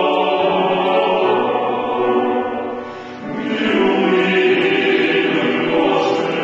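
Choir singing sustained chords; the sound dips briefly about halfway through, then the next phrase swells in.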